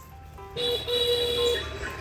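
Background music: quiet stepping notes, then a louder held tone coming in about half a second in.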